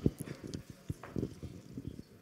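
Faint, irregular soft knocks and taps, several a second, with no voice.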